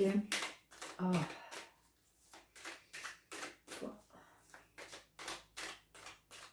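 A deck of oracle cards being shuffled overhand, a run of short soft flicks and slaps about three a second.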